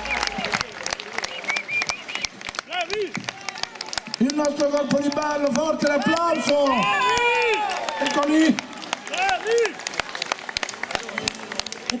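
Audience clapping and applauding right after the music stops, with several voices calling out over the applause in the middle.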